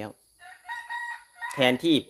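A rooster crowing once in the background, a single crow of about a second, fainter than the voice around it.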